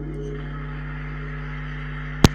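The last held notes of the backing music die away just after the start, leaving a steady low electrical hum with faint hiss.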